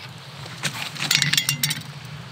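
Handling noise: a run of small clicks and rustles lasting about a second, from hands working fishing line in front of a waterproof jacket, over a steady low hum.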